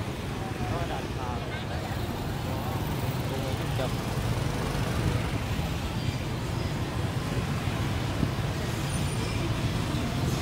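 Dense motorbike and scooter traffic: many small engines running together as a steady rumble, with voices from the surrounding crowd.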